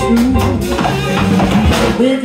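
Live jazz big band playing, with a drum kit striking steadily over bass and pitched instrument or vocal lines.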